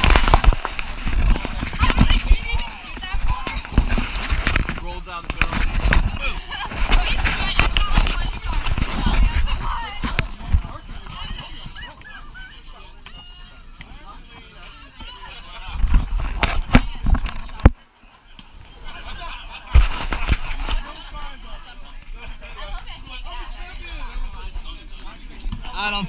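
Chatter of many people talking at once under the tent, no single voice clear, broken by several loud bumps against the microphone, the biggest near the start and around 16 and 20 seconds in.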